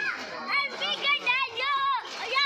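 Young children's high-pitched voices: a quick run of short calls that rise and fall, one after another, with no clear words.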